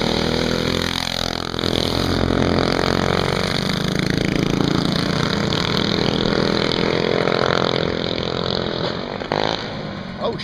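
Small single-cylinder four-stroke go-kart engines running hard and revving up and down. One kart passes close about a second in, its pitch dropping as it goes by.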